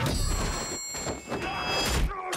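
Action-film fight-scene soundtrack: score music with steady high tones, crossed by several thuds of blows.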